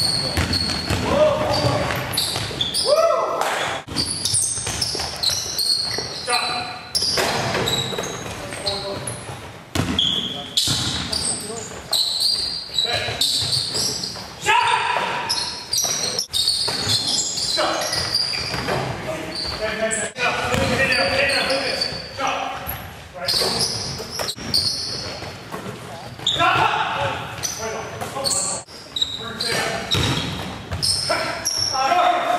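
Basketball game on a hardwood gym floor: a ball bouncing on the boards as it is dribbled, sneakers squeaking in short high chirps, and players calling out, all echoing in a large gym.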